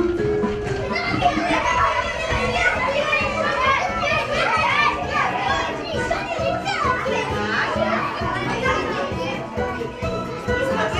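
A crowd of young children chattering and calling out all at once in a large hall, over background music.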